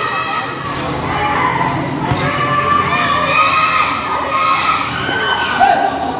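Basketball crowd shouting and cheering, many voices overlapping at once.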